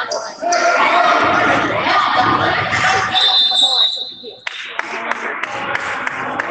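Voices calling out in a large, echoing gym, then a referee's whistle blown once about three seconds in, held for over a second before it cuts off. A few sharp knocks follow.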